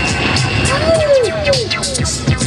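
Hip-hop beat played on DJ turntables, with a record scratched back and forth: from about halfway in, three short sweeps in pitch that rise and fall.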